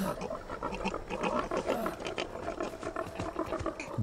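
A herd of pigs grunting and squealing, many short animal calls overlapping.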